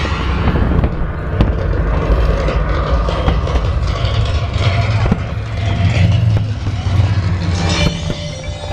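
Fireworks barrage: a continuous low rumble of many shells bursting together, broken by sharp bangs and crackling.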